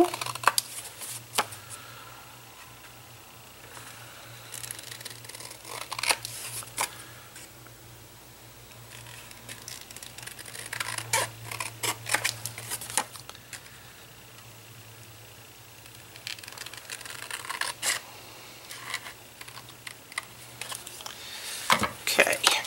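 Scissors trimming the edges of a paper picture card: scattered short snips and paper rustling.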